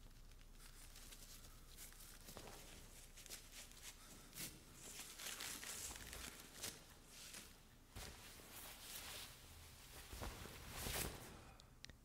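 Near silence: faint rustling with scattered soft clicks and a few brief swells.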